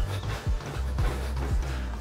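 Heel-strike footfalls of a runner in Hoka Cielo X1 carbon-plated running shoes landing on a treadmill belt as a regular series of thuds, over background music with a steady bass. Landing on the heel makes these footfalls noisier than a midfoot strike.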